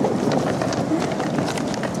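Wheeled suitcases rolling over paving with footsteps: a steady rumble broken by irregular clicks as the wheels cross the slab joints.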